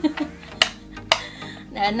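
Two sharp plastic clicks, about half a second apart, from a small handheld plastic mini amplifier for a violin being handled.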